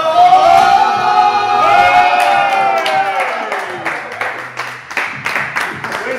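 A person's voice holding a long drawn-out, sung cheer for about four seconds, gliding down in pitch at the end, followed by a run of quick hand claps.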